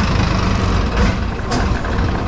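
Long-tail boat engine running steadily under way, a low rumble.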